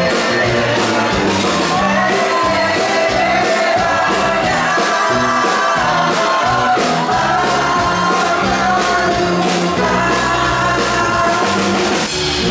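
Live rock band playing: male lead vocals sung over drums keeping a steady beat, with nylon-string acoustic guitar and keyboards.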